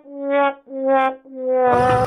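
Comic brass sound effect: a horn-like instrument plays three slow notes, each swelling and fading, stepping slightly down in pitch, in the manner of a sad-trombone 'wah-wah' sting.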